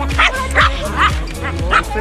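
A dog barking repeatedly in short sharp barks, over background music with a steady beat and singing.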